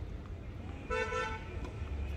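A horn sounding two short, flat-pitched toots back to back about a second in, over a steady low rumble.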